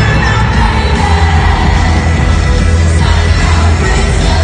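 Loud live rock band playing in an arena, recorded from inside the crowd, with a heavy, steady bass.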